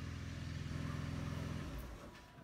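A low, steady motor-vehicle engine hum that dies away near the end.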